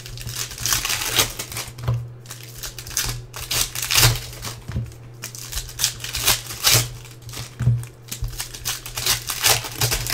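Foil wrapper of a trading-card pack crinkling and tearing in the hands as it is pulled open, in quick irregular crackles.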